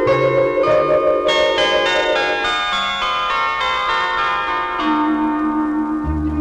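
Instrumental prelude of a 1970s Malayalam film song: ringing bell-like notes enter one after another over held tones, with low bass notes only in the first second and a new low held note near the end.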